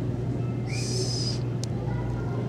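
A steady low hum, with a short hiss about two-thirds of a second in that lasts under a second, and a faint click just after.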